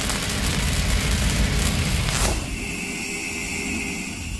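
Logo-reveal sound effect: a loud rumbling, crackling noise, a whoosh a little over two seconds in, then a quieter steady hum with a high tone.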